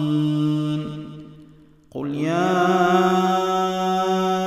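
Quran recitation by a male reciter. The long held note that closes a verse fades away, there is a short break about halfway through, and then the next verse opens on a long, steady sustained tone.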